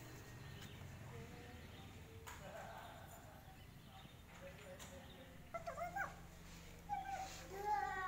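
A cat meowing three times in the second half: short calls that bend in pitch, over a low steady hum.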